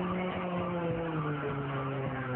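A low, steady engine drone that falls slowly in pitch and then holds level, over general crowd noise.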